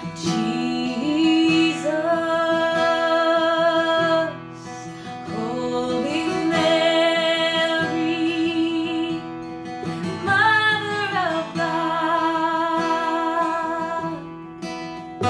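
A woman singing a slow hymn, holding long notes with vibrato, to her own strummed acoustic guitar; one phrase slides down in pitch about ten seconds in.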